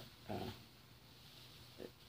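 Quiet room tone between two short, soft voiced sounds, one just after the start and one near the end.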